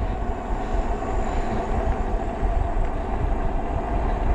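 Engwe EP-2 Pro 750 W fat-tyre e-bike running on throttle alone up a slight incline at about 17 mph. Wind rumbles steadily on the microphone over a constant hum from the tyres and drive.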